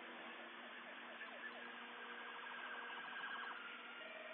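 Faint emergency-vehicle siren: short falling sweeps, then a rapid warble from about a second and a half in, over a steady hiss.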